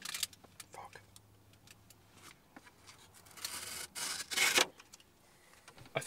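A steel folding-knife blade scraping across the paper of a greeting card, with light clicks of card handling and a louder rasping scrape about three and a half to four and a half seconds in.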